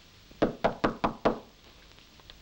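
Knuckles knocking on a wooden panelled door: five quick knocks about half a second in, roughly five a second.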